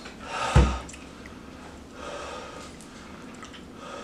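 A man's sharp, loud breath about half a second in, with a low thump, then quieter breathing as he endures the burn of a superhot chili-pepper lollipop.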